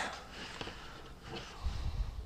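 Book pages being leafed through, faint papery rustles with a soft low thump near the end.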